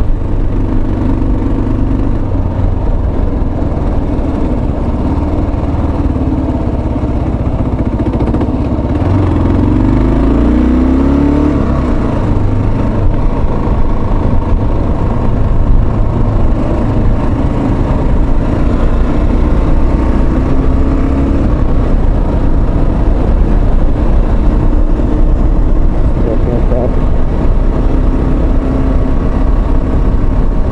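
Motorcycle engine running steadily under way, picked up by a microphone inside the rider's helmet. About ten seconds in, the engine pitch rises as the bike accelerates.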